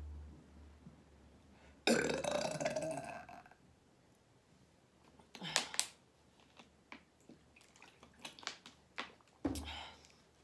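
A woman burping: one long, loud burp about two seconds in that lasts over a second and rises slightly in pitch, then shorter burps near the middle and again near the end, with a few small clicks between them.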